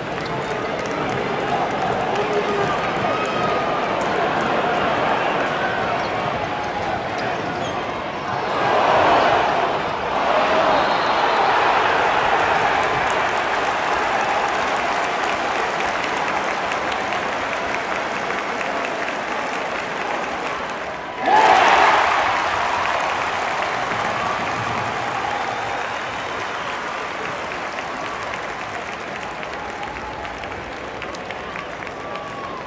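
Basketball arena crowd cheering and applauding in a continuous din, swelling about nine seconds in, then jumping suddenly louder a little past twenty seconds and slowly fading.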